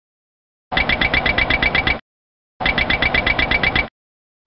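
Boeing 737NG overspeed warning clacker sounding in two bursts of rapid clacking, each just over a second long, at about ten clacks a second. It is the Mach/airspeed overspeed warning, set off here by the Mach/airspeed warning test switch.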